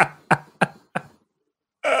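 A man laughing in four short, breathy bursts about a third of a second apart, then a brief pause.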